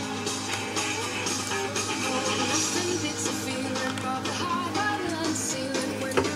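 Rock music with guitar and singing, played back from reel-to-reel tape through the built-in speakers and tube amplifier of a 1966 Grundig TK341 hi-fi stereo tape recorder.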